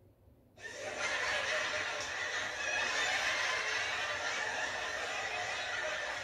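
Canned studio-audience laughter. It comes in about half a second after the punchline's pause, swells into a steady crowd of laughter and holds level.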